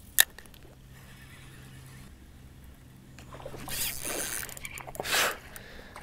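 Spinning fishing reel handled close up: one sharp click just after the start, then two bursts of rustling in the second half.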